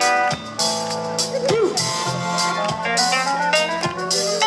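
Live band music through a festival PA, heard from within the crowd: a keyboard solo with held chords and sliding notes over a sustained bass.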